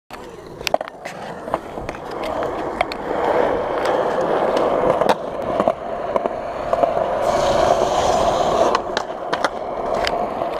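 Skateboard wheels rolling over concrete, a steady rumble with sharp clicks and knocks scattered through. A hissier scrape stands out about seven to nine seconds in.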